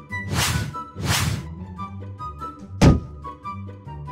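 Light cartoon background music with sound effects: two short swooshes in the first second and a half, then a single heavy thunk about three seconds in.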